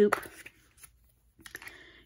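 Small plastic clicks and taps from handling a clear plastic drill storage container and a plastic scoop: a few faint ticks early, a short near-silent pause, then a quick cluster of light clicks near the end.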